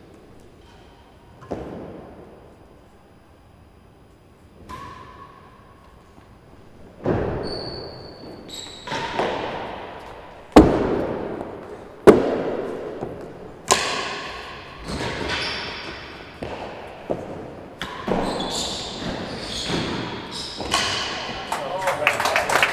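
A real tennis rally: a hard cloth-covered ball struck by wooden rackets and rebounding off the court's walls, penthouse roof and floor, each knock echoing in the large hall. A few isolated knocks come first, then a quick run of strikes from about seven seconds in.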